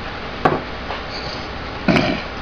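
Two small knocks of objects being handled on a workbench, a light one about half a second in and a stronger one near the end, over a steady low room hum.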